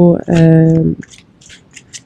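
A woman speaking for about the first second, then faint short scratchy rustles.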